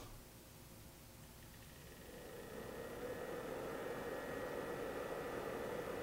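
80 mm cooling fan on a Vantec EZ Swap M3500 mobile rack running at its low-speed setting. A steady whoosh of moving air with a faint whine comes up about two seconds in, as the fan gets going, and then holds steady.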